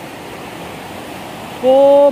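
Shallow stream water running steadily over stones. About a second and a half in, a person's voice cuts in with a loud, drawn-out "oh".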